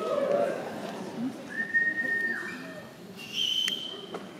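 A few short, steady whistled notes over the quiet murmur of a concert hall between songs. The longest comes about halfway through and slides down at its end, and a higher one follows near the end.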